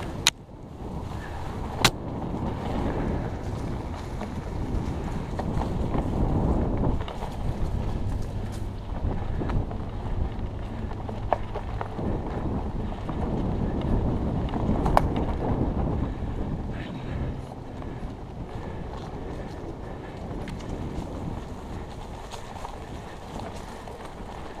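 Wind buffeting a helmet camera's microphone over the rumble of a Trek Stache mountain bike's 29-plus tyres rolling along a dirt and grass trail, with a few sharp clicks and knocks from the bike.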